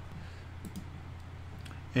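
A few faint computer mouse clicks over a low, steady electrical hum.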